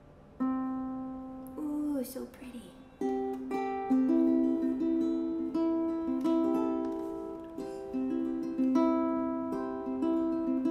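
Emerald Synergy carbon-fibre harp ukulele being plucked: single notes ring out and overlap, several pitches in a loose sequence, starting about half a second in. A short child's vocal sound comes about two seconds in.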